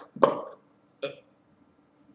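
A man's short throaty vocal noise, like a grunt or burp, then a briefer, weaker one about a second later.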